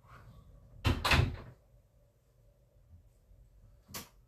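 Two heavy knocks in quick succession about a second in, then a single sharp click near the end.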